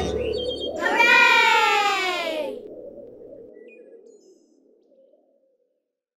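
A cartoon sound effect: one long tone gliding downward in pitch for about a second and a half, over background music that then fades out to silence.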